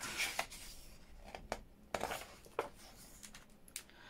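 A page of a hardback book being turned by hand on a table: soft paper rustling with a few light, irregular flicks and taps of the leaf.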